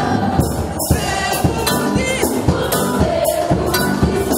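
A choir singing gospel music over percussion that keeps a steady beat of about two strokes a second.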